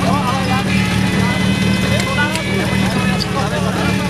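Portable fire pump's engine running steadily at a constant pitch, with men's voices calling out briefly near the start and again about halfway.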